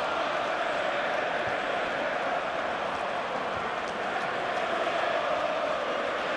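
Football stadium crowd: a steady din of many voices, holding an even level throughout.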